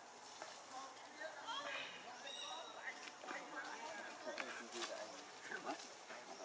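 Faint background of distant voices mixed with short, chirping animal calls and scattered small clicks.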